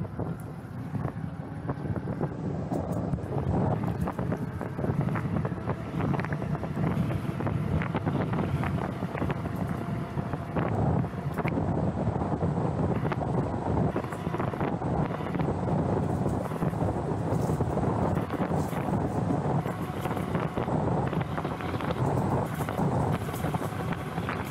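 Wind rumbling on the microphone of a camera riding on a moving e-bike, steady throughout, with scattered small clicks and ticks.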